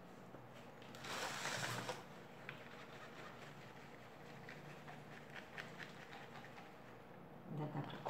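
Plastic trays of thick soap batter being handled: a brief scraping rustle about a second in, then faint scattered clicks and taps.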